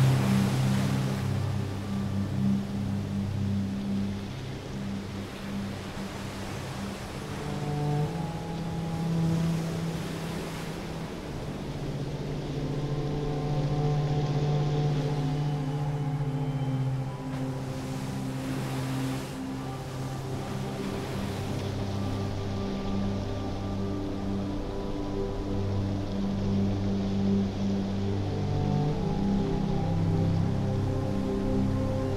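Ambient soundtrack of slow, sustained low chords that shift every few seconds, over a rushing wind noise that swells and fades a few times.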